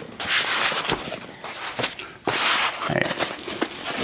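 Cardboard box and foam packaging being handled: a few rustling, scraping swishes with a couple of short knocks as the packing is lifted out and set down on the table.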